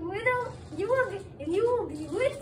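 A young child's wordless high-pitched vocalising: a string of short calls that each rise and fall in pitch, about two a second, meow-like in shape.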